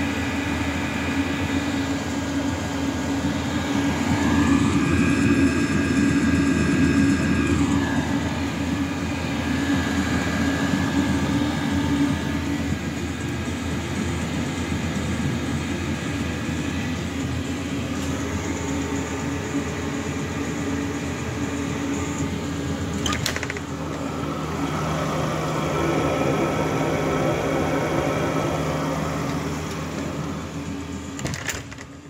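Chinese diesel air heater running: a steady whirring blower and burner noise over a low hum, with tones that swell for a few seconds twice. A single sharp click comes about three quarters of the way through.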